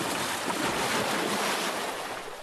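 Ocean waves breaking on rocks: a continuous rushing wash of surf that fades away near the end.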